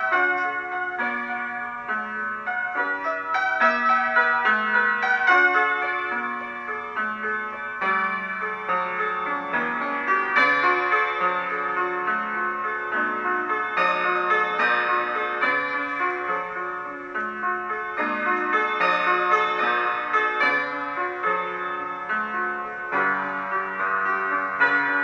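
Solo piano playing a continuous piece, with a bass line moving under chords and a melody.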